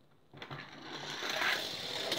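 Plastic toy-car ramp set rattling as it is worked: a continuous mechanical rattle that builds over about two seconds and then stops suddenly.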